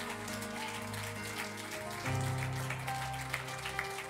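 A church praise band plays soft instrumental music: sustained chords over a low bass note, moving to a new chord about two seconds in, with light percussive ticks throughout.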